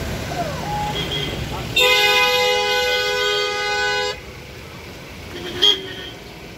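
A vehicle horn sounds in one steady blast of about two seconds over the low rumble of passing cars, followed near the end by a short, sharp loud sound.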